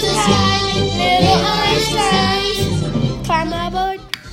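A children's cartoon theme song: children singing a melody over upbeat backing music, which cuts off abruptly near the end.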